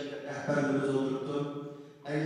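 Speech only: a man talking into a microphone in a steady, drawn-out delivery, pausing briefly near the end.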